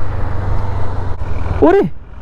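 A Honda CB300F's single-cylinder engine running steadily as the bike rolls along the road, a low hum under a haze of road noise. A short vocal sound falls in pitch near the end.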